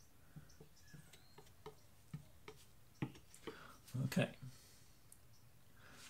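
Faint, irregular small clicks and light taps, a couple a second, from a tool and gloved hands working wet paint on a canvas. About four seconds in there is a brief low murmur.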